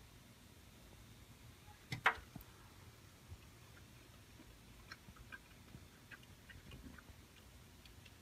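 Quiet room with two sharp clicks about two seconds in, then small scattered clicks: wooden chopsticks knocking a ceramic rice bowl, and quiet chewing of a bite of rice.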